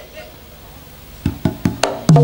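Four quick drum strokes, about a fifth of a second apart, begin a little over a second in after a quiet stretch. They open the band's music.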